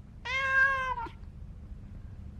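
A cat meows once, a single drawn-out call of just under a second that drops in pitch at its end.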